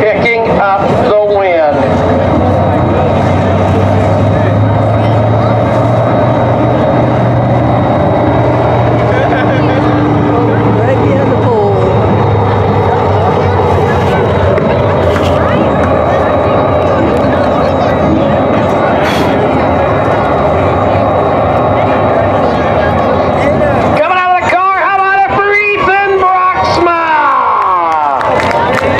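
Dirt-track ambience: a steady wash of race-car engine noise with a low hum and crowd babble, then a public-address announcer's voice near the end.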